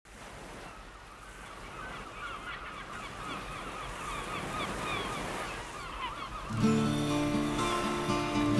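Many short rising-and-falling bird calls over a steady hiss that grows gradually louder. About six and a half seconds in, the song's music comes in with strummed acoustic guitar.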